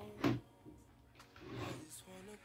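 Cables handled by hand on a desk: a sharp knock as the USB plug and cable are pushed back at the laptop about a quarter second in, then a soft rustle of cable near the end.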